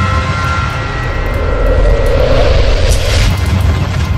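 Cinematic logo-reveal sound effect: a deep, steady rumble with ringing tones that fade in the first second. A whoosh swells about two seconds in.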